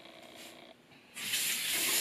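Bathroom sink tap turned on about a second in, water then running steadily into the basin.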